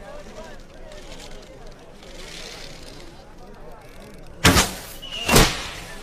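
An arrow shot from a bow and striking its target: two sharp, loud sounds about a second apart near the end, the second one led in by a brief whistle. Faint voices murmur underneath.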